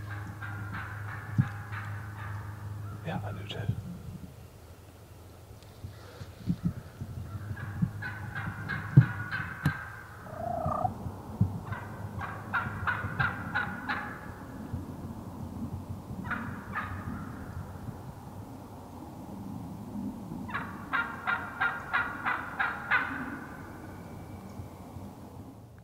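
Wild turkey calling in five runs of quick repeated notes, about three to four a second; the longest run comes near the end.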